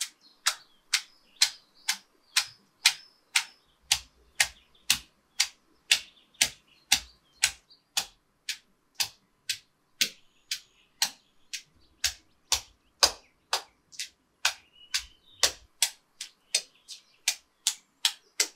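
Stone pestle pounding green chillies in a stone mortar: sharp knocks at an even pace of about two a second, starting about half a second in.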